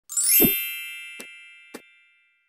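Intro logo sting: a quick rising shimmer into a bright, loud chime hit with a low thump about half a second in, its many tones ringing on and fading. Two short clicks sound during the fade.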